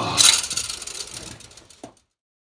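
Metallic clatter and scrape of a cylinder head, rocker gear still on it, knocking against the block and studs as it is lifted clear. The noise is loudest just after the start, dies away over about a second and a half, and ends with a small click.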